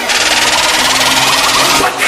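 Loud outro sound effect: a fast, even mechanical rattle with a strong hiss above it, steady throughout.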